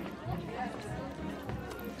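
Indistinct, low voices over room noise, with a few faint clicks.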